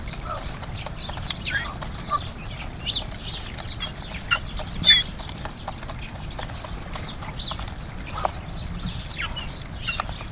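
Sparrows chirping busily and continuously, many short, quick, high chirps, with scattered sharp taps of pheasants pecking seed from a wooden feeder tray. One louder, sharper sound comes about halfway through.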